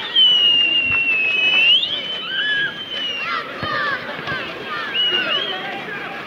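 A long, high whistle lasting about two seconds that dips slightly and then rises sharply in pitch at its end, with a shorter whistle later and shouting voices from the pitch around it.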